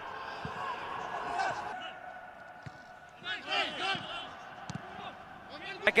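Football match sound in an empty stadium: a few sharp thuds of the ball being kicked, with faint players' shouts echoing around the bare stands.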